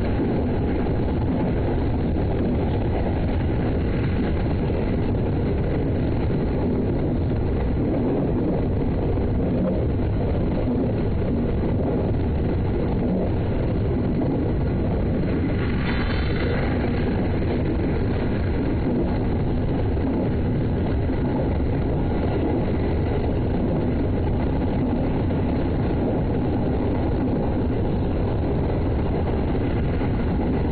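JR East 209 series electric train running along the line, heard from just behind the driver's cab: a steady low rumble of motors and wheels on rail. A brief higher ringing tone joins about halfway through.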